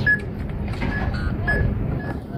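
Store checkout barcode scanner beeping as groceries are scanned: a few short, single-pitched high beeps, irregularly spaced, over low store background noise.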